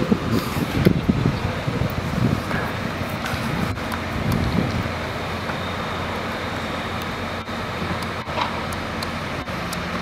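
Steady road traffic noise: a low, even rumble of vehicles, more uneven in the first few seconds and steadier after, with a few faint clicks.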